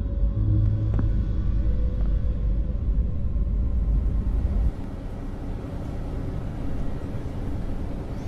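Deep, low rumbling drone of a film soundtrack's background ambience, with a few faint steady tones above it. The rumble cuts off suddenly a little past halfway, leaving a quieter, even hiss.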